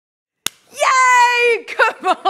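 A single sharp click, then a woman's long, held, high-pitched exclamation of greeting that falls away at its end, followed by quick excited speech.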